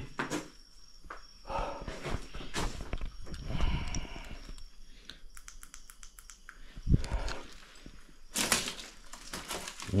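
Footsteps and rustling over a debris-strewn floor, with irregular soft clicks and scrapes and a dull thump about seven seconds in.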